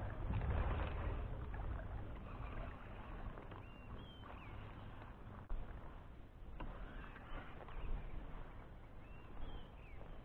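A plastic kayak moving on calm water: soft sloshing and lapping along the hull with a low rumble and a couple of light knocks. A short bird chirp sounds about four seconds in and again near the end.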